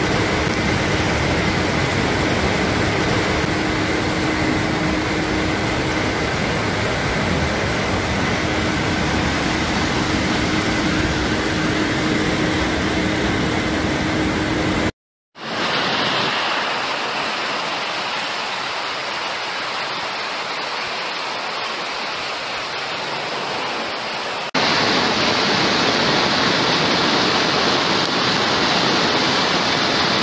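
Muddy floodwater rushing through streets and channels: a loud, steady rush of water. It cuts out for a moment about fifteen seconds in, sounds thinner and lighter in the bass for a while, and comes back fuller near the end, where the torrent pours down a stepped channel.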